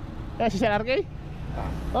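A short spoken phrase in a man's voice about half a second in, over a steady low rumble of vehicle engines at a petrol station forecourt.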